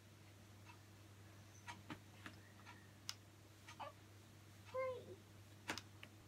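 A baby in a pram gives one short, pitched coo or whimper that bends up and down, about five seconds in, over a few faint clicks and knocks.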